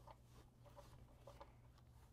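Near silence: room tone with a few faint, short noises in the first second and a half.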